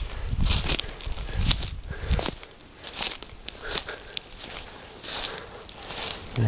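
Footsteps pushing through dry leaf litter, sticks and tussock grass, about one rustling, crackling step a second, with stems brushing past.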